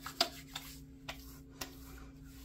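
Handling of a splash aftershave bottle and hands: about three short sharp clicks and taps, with light rubbing as the aftershave is worked between the palms, over a faint steady hum.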